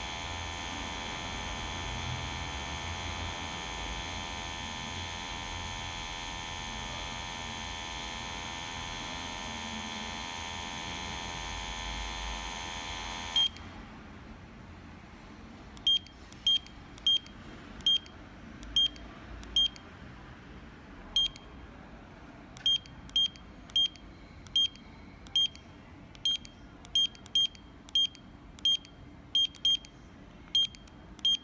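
A GMI PS200 portable gas detector beeping once for each button press: about twenty short, high, identical beeps at irregular spacing while its menu is navigated and an entry code is keyed in. Before the beeps, a steady electronic tone made of several pitches runs and then cuts off suddenly about 13 seconds in.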